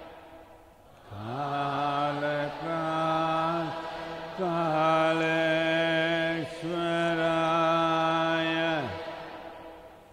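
A man chanting a mantra in a low voice, holding four long steady notes, each ending in a falling slide.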